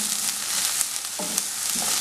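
Chopped onions and green chillies sizzling as they fry in a nonstick pan, with a spatula stirring and scraping through them against the pan.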